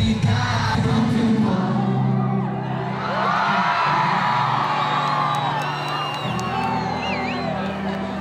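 Live concert music over the PA, with a big crowd singing along and high whoops rising from the audience in the second half.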